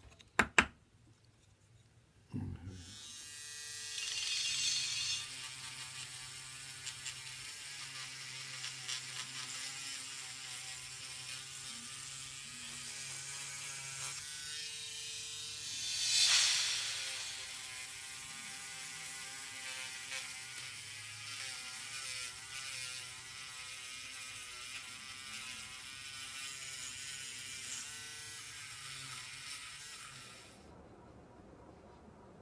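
Proxxon pen sander motor running steadily with a buzzing hum, starting a couple of seconds in, as a small wooden part is sanded; the hiss swells briefly about halfway through. Two sharp clicks come just before the motor starts.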